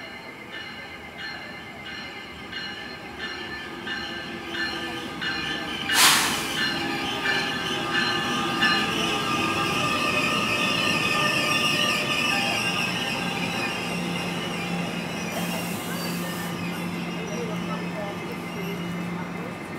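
NJ Transit ALP-46A electric locomotive and bi-level commuter train arriving at a platform. The bell rings about one and a half times a second, then comes a sharp, loud burst of noise about six seconds in as the locomotive draws alongside. The wheels and brakes squeal as the coaches roll past and slow, and a steady low hum sets in near the end as the train comes to a stop.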